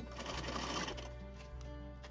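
Sewing machine stitching lace trim onto fabric in a short run of about a second, then easing off, with background music underneath.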